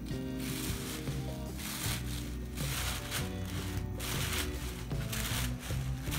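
Background music with steady held notes, over which tissue paper rustles and crinkles in about five bursts of roughly a second each as its layers are pulled apart and fluffed.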